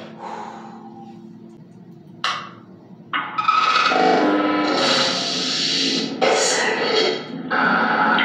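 A spirit box comes on about three seconds in: a radio sweeping rapidly through stations, giving loud, choppy noise and clipped fragments of broadcast sound that cut in and out abruptly. Before that there is only a faint low hum and one short click.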